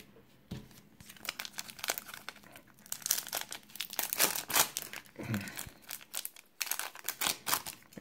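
A foil trading-card pack being torn open and crinkled by hand: a run of sharp crackles, densest in the middle.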